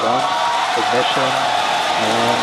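Falcon 9's nine Merlin engines at liftoff: a loud, steady rushing noise, with many voices cheering and shouting over it.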